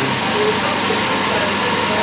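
A steady, even hiss of background room noise with no speech, holding at the same level throughout.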